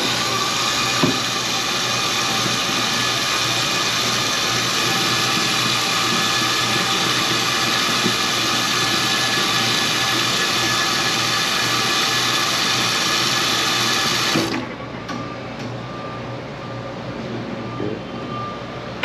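Faucet running a steady stream of water into a stainless steel hand sink, then shut off about fourteen seconds in.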